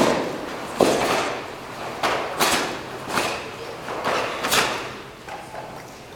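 Karate team performing the kata Unsu in unison: sharp snaps of their cotton gi as they strike and block, about seven in quick succession, some in pairs, each with a short echo in the hall.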